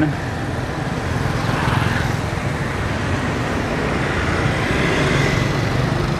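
Road traffic: cars and motorbikes passing close by, a steady wash of engine and tyre noise.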